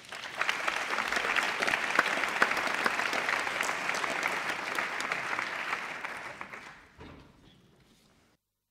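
A crowd applauding with many hands clapping, swelling right at the start, holding steady, then dying away about seven seconds in.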